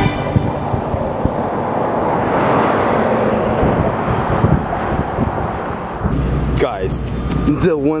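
Skateboard wheels rolling on rough asphalt: a steady rolling noise that swells and then fades over about six seconds. Then it changes to city street ambience, a low traffic hum with people's voices, during the last two seconds.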